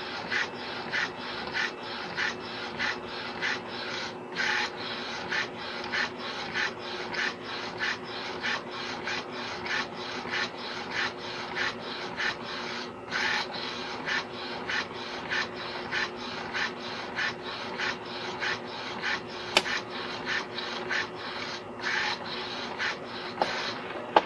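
Modified Epson C86 inkjet printer printing onto a copper-clad board: the print-head carriage shuttles back and forth in a regular rhythm of about two passes a second, over a steady hum.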